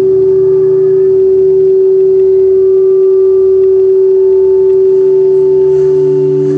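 Live experimental drone music played on electronics: a loud, steady held tone over a lower drone, with a deep throb beneath that pulses about once a second. Faint higher tones come in and fade out partway through.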